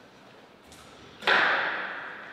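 A single sharp thump about a second in, ringing on and fading over about a second in the hall's echo.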